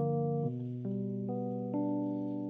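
Electronic keyboard playing the slow introduction of a ballad: sustained chords over low bass notes, changing about every half second.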